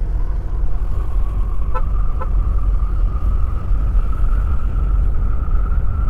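Yamaha NMAX scooter riding at speed: a heavy, steady low rumble of wind and road noise over the engine, with a faint whine that climbs slightly in pitch as the scooter gains speed. Two short faint beeps come about two seconds in.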